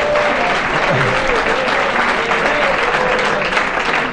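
A congregation applauding steadily, with a few voices heard faintly through the clapping.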